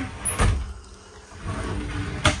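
RV shower door being handled: a sharp knock about half a second in, then low rubbing and rattling of the door near the end.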